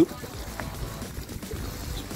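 Low, uneven rumble of a bicycle rolling over a rough earth-and-gravel track.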